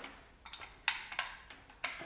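Two short, sharp plastic clicks about a second apart, as cable connectors are handled and plugged into the Philips Hue Bridge.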